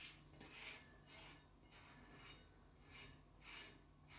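Faint, repeated soft scraping strokes, a little more than one a second, as a piece of cardboard spreads glue over a metal grinding disc.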